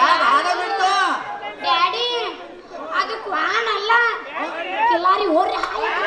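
Speech only: actors' spoken stage dialogue through microphones.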